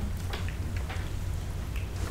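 Meeting-room background noise: a steady low hum with a faint even hiss and a few soft ticks or rustles.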